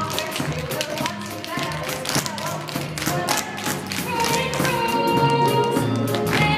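Tap shoes striking the stage floor in a rapid series of taps, a tap-dance routine played over show music from the musical.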